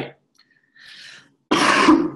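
A young man coughs once, a loud, harsh cough into his elbow, about one and a half seconds in, after a faint breath; it comes from a dry throat.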